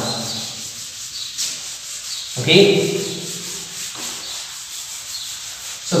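Chalkboard being erased with a duster, a steady scrubbing rub of cloth or felt across the board.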